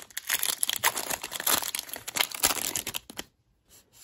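A foil trading-card pack, a 2023 Panini Illusions football pack, being torn open and crinkled: a dense run of crackling for about three seconds that then stops.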